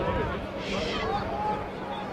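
Faint, distant voices of people calling out across the football ground, over a steady low hum.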